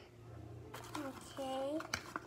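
A child's voice saying "okay" about a second in, over a faint steady low hum, with a short click near the end.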